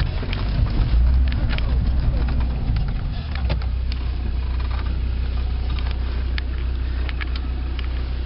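Off-road 4x4's engine running with a steady low drone, heard from inside the cab, with scattered clicks and knocks as the vehicle jolts over rough ground.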